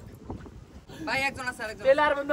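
Men talking, a man's voice starting about a second in, over a low steady background rumble.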